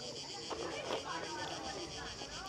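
Faint, distant people's voices over a quiet outdoor background, with a steady high-pitched buzz underneath.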